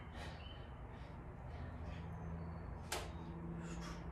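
A quiet room with a steady low hum and one sharp click about three seconds in.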